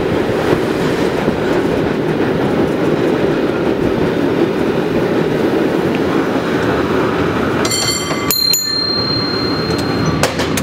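San Francisco cable car running along its tracks with a steady rumble. About eight seconds in, a high-pitched metallic squeal rings out and holds for a second or two.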